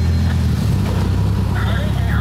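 Car engines idling close by: a steady, loud low rumble, with faint voices in the background in the second half.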